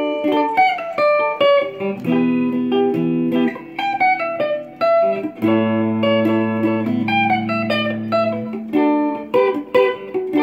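Custom-built electric guitar with a Volkswagen hubcap body, played as a lead guitar: picked single-note runs up the neck, with a few low notes held ringing in the middle. It sounds like an electric lead guitar, not a banjo or resonator.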